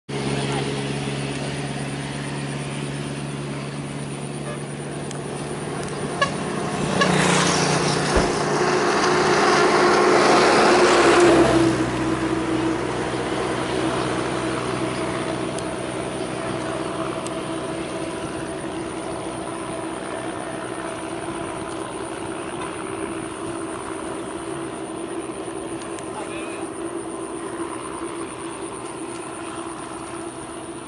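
A motor engine running steadily. It swells louder for a few seconds, from about seven to twelve seconds in, as if passing close by, then settles back.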